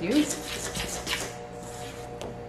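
Bread dough being stirred in stainless steel mixing bowls with a silicone spatula and a spoon, scraping against the metal in a run of short strokes through the first second or so.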